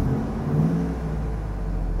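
2000 Ford F-150 SVT Lightning's supercharged 5.4-litre V8 idling while still warming up, heard from the side away from the exhaust outlet; the revs rise briefly about half a second in and settle back.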